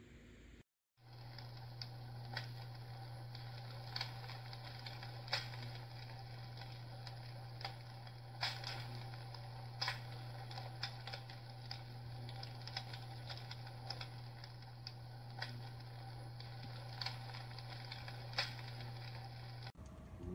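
Electric fireplace log insert playing its simulated wood-fire crackle: irregular sharp pops and snaps every second or so over a steady low hum.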